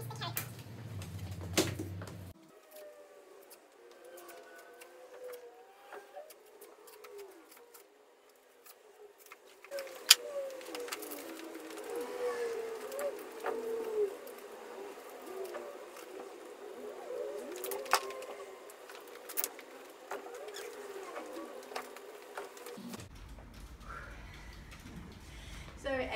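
Fast-forwarded sound of a Bugaboo Cameleon3 pram being changed from carrycot to seat: a high-pitched, garbled voice with a few sharp clicks of the pram's parts, three of them in the second half.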